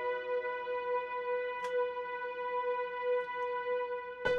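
Omnisphere 'Adagio Transparent Strings Warm' software string pad holding a single sustained note, smooth and unchanging. A lower note of the chord fades away within the first half second.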